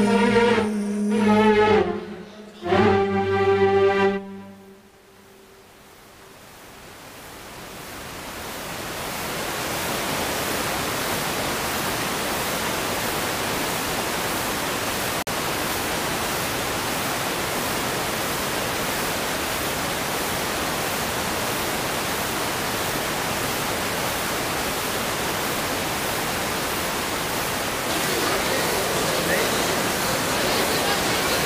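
A sung phrase with musical accompaniment ends about four seconds in. After a short dip, a steady, even hiss rises over several seconds and then holds, with faint voices near the end.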